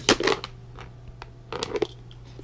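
Almonds and their shells clattering and crunching as they are handled in bowls: a short burst of clicks right at the start, a few single ticks, and another burst about a second and a half in.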